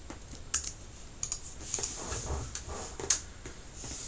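Typing on a computer keyboard: a run of key clicks at an uneven pace.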